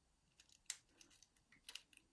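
Faint, sharp metallic clicks and ticks, the loudest about two-thirds of a second in and a few more near the end, as small springs are fitted into the pin chambers of a brass cutaway euro cylinder lock.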